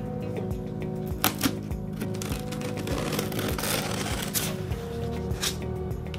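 Background music with steady tones, over the rustling of a cardboard shipping box being opened and its packing material handled. The rustling is loudest in the middle stretch, with a few sharp clicks or tearing sounds.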